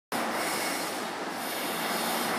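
Air-resistance rowing machine's flywheel spinning with a steady whooshing rush of air as the rower keeps stroking.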